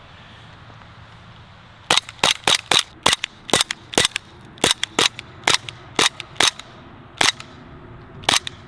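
Elite Force GHK Glock 17 gas blowback airsoft pistol firing about twenty shots in quick strings, about three to four a second, starting about two seconds in. Each shot is a sharp pop of gas with the slide cycling.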